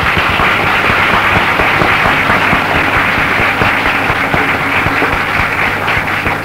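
Audience applauding: dense, steady clapping, over a low steady hum.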